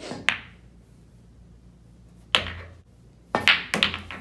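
Pool shot: the cue tip strikes the cue ball with a sharp click. About two seconds later comes a single clack of balls colliding, then a quick run of clacks and knocks near the end as the balls hit each other and the cushions.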